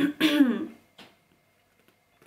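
A woman clearing her throat once, a short voiced 'ahem' near the start.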